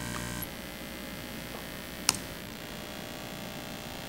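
Low electrical mains hum that drops away about half a second in, leaving quiet room tone, with a single sharp click about two seconds in.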